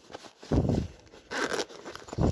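Handling noise close to a phone's microphone as items are moved about by hand: a dull bump about half a second in, then a short rustle about a second and a half in.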